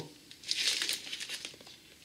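Plastic record sleeve crinkling as it is handled, starting about half a second in and dying away over about a second.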